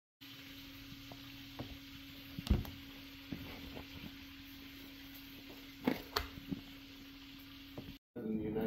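Vacuum-sealed plastic package of raw oxtails being handled: scattered light taps and crinkles, strongest about two and a half and six seconds in, over a steady hiss and a low hum.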